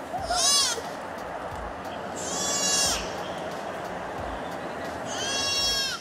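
White-tailed deer fawn bleating in distress: three high-pitched bleats, one just after the start, a longer one in the middle, and one near the end. Under them is a steady rushing noise.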